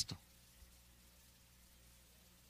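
Near silence: a man's spoken word ends just at the start, then only a faint, steady low hum.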